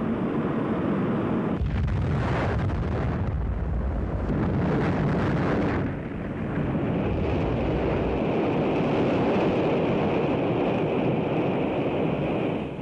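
Atlas-Centaur rocket exploding in flight: a continuous, loud, noisy rumble that deepens sharply about a second and a half in, eases briefly around six seconds, then builds again.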